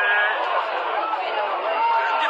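Speech only: men's voices talking, several at once.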